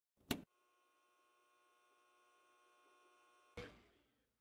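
Faint intro sound effect: a short sharp hit, then a long, faint ringing of several steady tones held together, and a brief burst of noise about three and a half seconds in that fades away.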